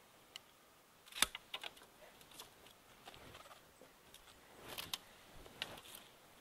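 Hand secateurs cutting a rose stem: one sharp snip about a second in, then a few small clicks. Light rustling with more small clicks near the end.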